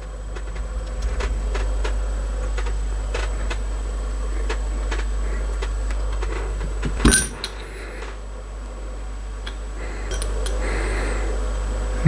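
Small clicks and taps of a screwdriver working the side-plate screws of a Manurhin MR73 revolver, then metal clicking as the side plate is levered off the frame, with one sharper click about seven seconds in. A steady low rumble runs underneath.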